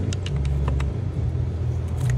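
A few light clicks and taps of a screwdriver working a water pump loose from its dowel pins on a 2.0 TSI engine, over a steady low rumble.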